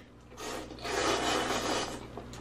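A person slurping ramen noodles into the mouth: two long airy slurps, the first short, the second starting about a second in and lasting nearly a second.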